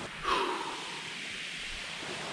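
Steady wash of sea surf on a shingle beach, with wind on the microphone, and a short breathy sigh from a man near the start.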